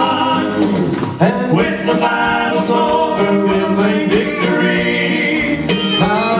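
Male southern gospel vocal trio singing in close harmony through microphones, mostly on long held notes.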